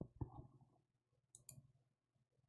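Very faint clicks and knocks from hands working at a desk: two soft low knocks at the start, then two sharp clicks in quick succession just before the end.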